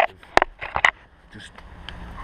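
Two sharp knocks about half a second apart as a person climbs around a steel railing on a concrete ledge, hands and shoes striking the bars and the ledge.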